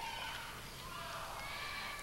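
Faint crowd noise in a large hall, with a few distant voices calling out in gliding pitches.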